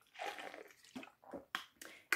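A person drinking from a bottle: faint gulps and swallows with small mouth sounds, and a few soft clicks in the second half.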